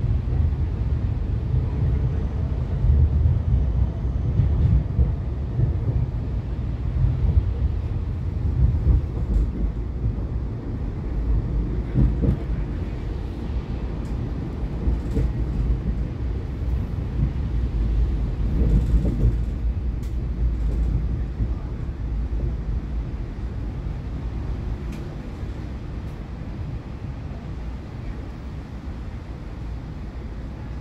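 Siemens Combino low-floor tram heard from inside the passenger compartment, running steadily with a low rumble from wheels and running gear, with a couple of brief clatters about 12 and 19 seconds in. The rumble grows a little quieter near the end.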